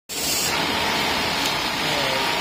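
Steady noise of a garment factory sewing floor with machines running, and a faint steady whine underneath.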